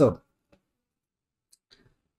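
A short spoken "so", then quiet with a few faint clicks: one about half a second in and a small cluster near the end.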